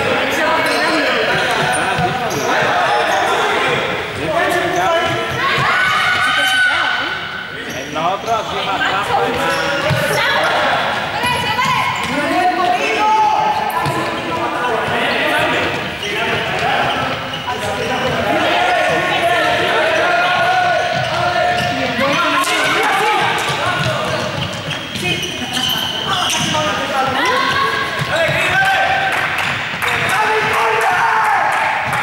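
Several basketballs being dribbled on a sports-hall floor, an irregular patter of bounces, under a steady din of young people's shouts and chatter that echoes in the large hall.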